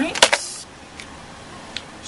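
A sharp click and a second click about a quarter second in, then two faint ticks near one second and near the end, as a small plastic eyeshadow compact is picked up and handled.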